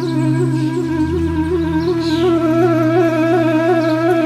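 Relaxing flute music: the flute holds one long note with an even, wavering vibrato over sustained low drone notes.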